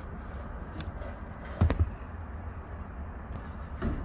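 Glove box damper in a car dash being squeezed with pliers and worked off its mounting pin: a faint click, then two sharp plastic clicks close together about a second and a half in, over a steady low hum.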